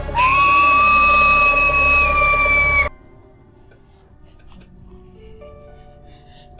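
A loud scream held on one high pitch for nearly three seconds, rising as it starts and cut off abruptly. It is followed by soft music of long held notes.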